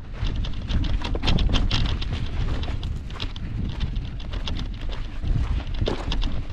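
Wind buffeting the microphone, with irregular crunching steps on stony desert ground.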